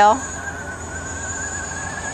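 Battery-powered tracked helicopter tug's electric drive whining at a steady high pitch with a slight waver as its tracks turn the helicopter in place.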